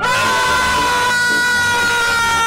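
A man's loud, sustained scream: one long held note that starts abruptly and sags slightly in pitch. It carries plainly from inside a glass booth that was said to be soundproof.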